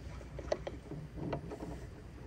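Room noise of a seated audience in a hall: scattered soft knocks and shuffling at irregular intervals, with the sharpest knock about half a second in, over a faint steady hum.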